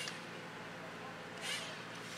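Faint steady background hiss, with a brief soft rustle about a second and a half in.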